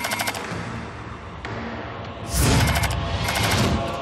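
Tense film score with sound effects: a short burst of rapid clicking at the start and again near the end, and a sudden rushing swell with a low boom about two seconds in.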